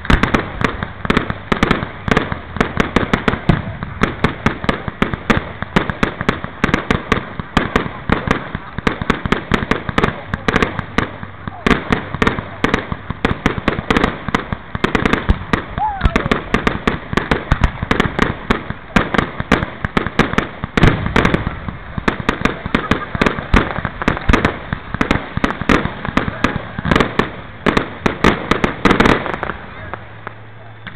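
Fireworks going off in a rapid, continuous barrage, with many sharp cracks and bangs a second from launches and bursting shells. The barrage stops abruptly near the end.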